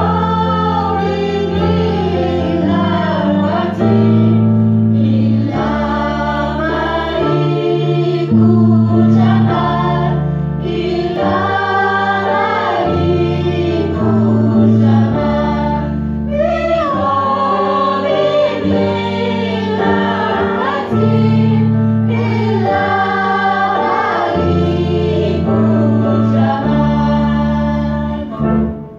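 Several women's voices singing an Arabic song together, over a small ensemble with oud and a bass line that steps from note to note every second or two.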